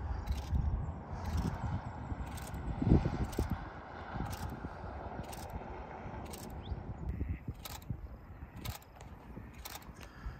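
Thunderstorm ambience: a low rumble of distant thunder that swells about three seconds in, mixed with wind noise on the microphone. Faint ticks come about once a second throughout.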